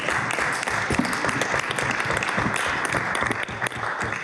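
Legislators applauding in the assembly chamber: dense, steady clapping that thins out and fades near the end.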